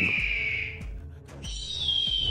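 Background music holding a high, thin whistle-like note that fades out about a second in. A second high note enters near the end and slowly slides down in pitch.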